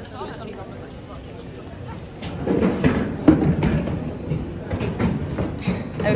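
Several young people's voices talking at once, unclear chatter that grows louder about halfway through, with a few short knocks among it.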